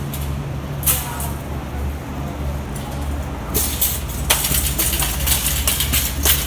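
A metal shopping cart rattling and clattering as it is pushed, in quick, irregular clicks starting about three and a half seconds in, over a steady low rumble.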